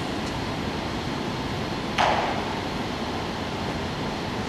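Steady background noise of a large indoor hall, like ventilation running, with a single sharp bang about halfway through that rings briefly.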